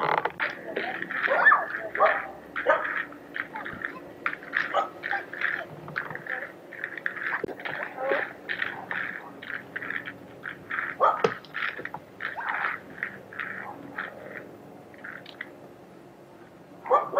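A dog barking over and over in a fast, steady run of short barks, about three a second, thinning out near the end.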